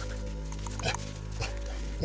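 Grey wolves jostling in play give two short calls, about one second and one and a half seconds in, over a steady background music drone.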